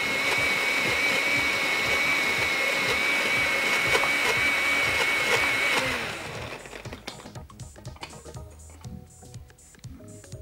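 Countertop blender running steadily with a high whine as it blends grapes with crushed ice. It is switched off about six seconds in and spins down.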